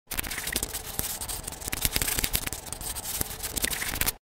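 Pencil scribbling on paper: a steady dry scratching broken by many sharp ticks.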